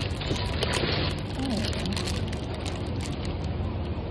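Supermarket food-hall background: a steady low hum with faint distant voices, and crinkling of plastic-wrapped fruit punnets being handled.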